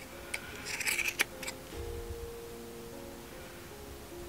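Scissors snipping through the looped yarn of a pom-pom: several quick cuts in the first second and a half, the loudest a sharp click about a second in.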